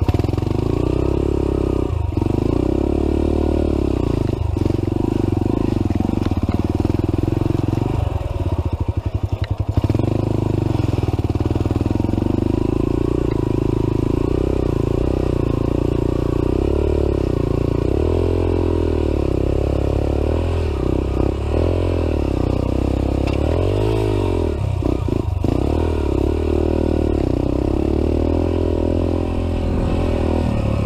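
Dirt bike engine running under a rider on a rough trail, its pitch rising and falling with the throttle. There are brief dips where the throttle is rolled off, and quicker revving up and down in the second half.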